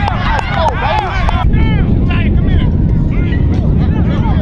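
Steady low rumble of wind on the microphone under many overlapping, indistinct voices calling out. About a second and a half in the sound changes abruptly at an edit, after which the calls are fewer and fainter.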